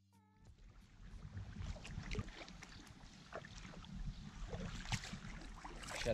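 Wind buffeting the microphone and water splashing as a kayak is paddled, a rough, uneven rumble with scattered crackles that grows louder. A short falling pitched tone sounds at the very start.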